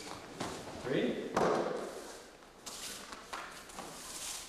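Thuds and shuffling of bare feet and a body on a padded training mat during an aikido throw, with a voice heard briefly; the loudest sound comes about a second and a half in.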